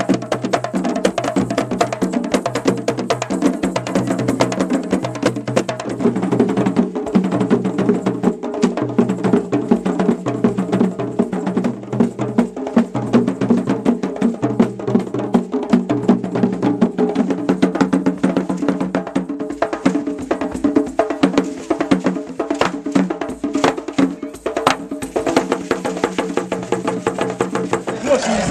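West African drum ensemble playing a fast, steady rhythm: djembes struck by hand over dunun bass drums beaten with sticks.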